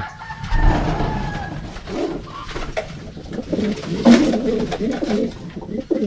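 Racing pigeons cooing in the loft, low repeated coos, with one sharp knock about four seconds in.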